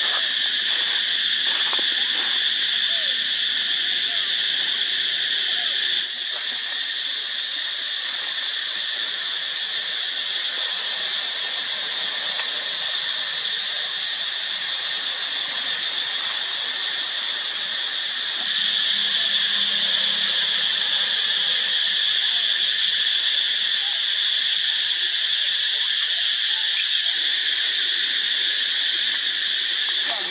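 Steady, high-pitched chorus of insects droning without a break in a forest, dipping slightly in level about six seconds in and rising again a little past halfway.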